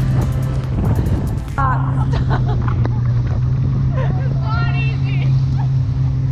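A jet ski engine drones steadily at speed, with water rushing and spraying off the hull and wind on the microphone.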